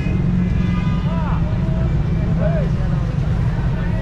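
Street market ambience: a loud, steady low rumble, with faint voices of shoppers and vendors in the distance.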